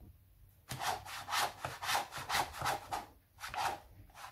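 A metal bench scraper drawn repeatedly along a plastic piping bag full of cookie dough, pushing the dough down toward the tip: a run of scraping strokes, about three a second, starting just under a second in.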